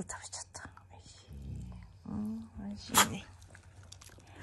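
Black Shiba Inu's breathing and mouth noises, with a short low grunt about two seconds in and a sharp snort about three seconds in, the loudest sound.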